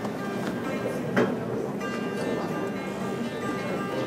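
Dan tranh, the Vietnamese plucked zither, played solo: a run of plucked notes that ring and fade. One short, louder sound cuts in about a second in.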